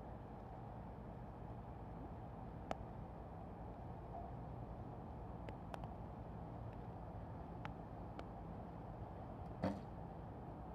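A recurve bow shot: about a second before the end, one short sharp thud as the string is released and the bow jumps forward. Before it there are a few faint clicks, over a quiet steady outdoor background.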